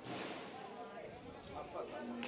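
Faint, distant voices of people calling and talking on a football pitch, with a short rush of noise at the start.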